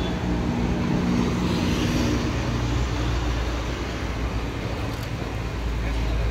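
Steady background rumble of a busy exhibition hall, heavy in the low end, with a faint hum in the first couple of seconds.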